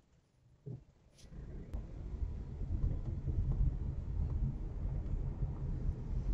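Low, steady rumble of a car on the move, engine and road noise heard from inside the cabin. It starts about a second in, after a moment of dead silence.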